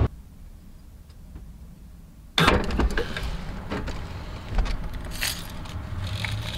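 A faint lull, then from about two and a half seconds in, a run of clicks, knocks and metallic rattles from a wire shopping cart and groceries being moved into an open car trunk.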